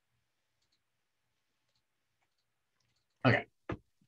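Near silence with a few faint scattered clicks, then a man's voice says "okay" about three seconds in.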